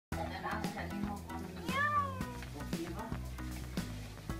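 A domestic cat meows once, a long call that rises then falls in pitch about two seconds in. Background music with a steady beat plays under it.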